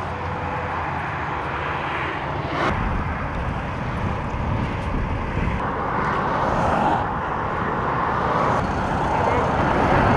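Steady roar of motorway traffic passing close by, with a low rumble that grows louder about six seconds in.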